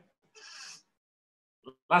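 A man's short, faint intake of breath through a webinar microphone, followed by a small mouth click just before his speech resumes near the end.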